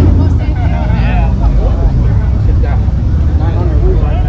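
A steady low rumble runs through, with people's voices talking in the background.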